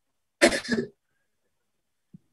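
A person clearing their throat once, a short rasp in two quick pulses about half a second in.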